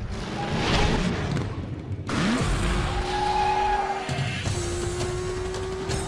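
Soundtrack of a Hot Wheels TV commercial: music mixed with racing-car sound effects. The sound changes abruptly about two seconds in, then a steady hum holds through the rest.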